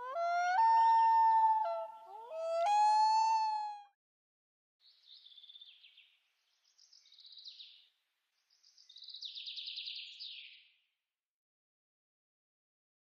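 A long animal howl of about four seconds, a held cry that breaks and slides up in pitch twice. It is followed by three short, higher, raspy calls, the last the longest.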